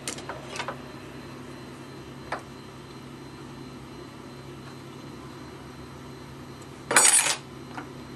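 Metal hand tools clinking on a wooden workbench: a few light clicks in the first second, then a short, louder clatter about seven seconds in, over a low steady hum.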